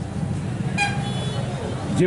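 A short horn toot about a second in, over a steady low background rumble.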